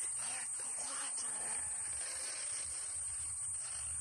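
Breathy, hissing vocal sounds from a 1983 cassette recording of experimental voice work, over steady tape hiss with a thin high whine.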